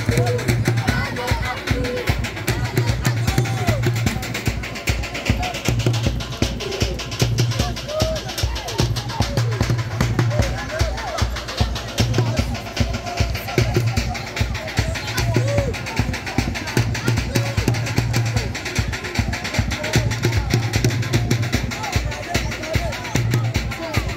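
Fast, steady drumming with crowd voices calling and shouting over it, typical of the drum accompaniment of a moringue fighting circle.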